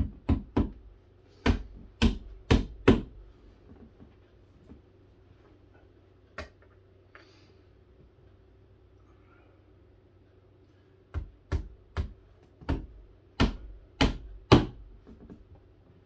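A hammer pounding nails into a flat-pack cubby organizer: a quick run of about seven sharp strikes, a single strike in the pause, then another run of about seven near the end.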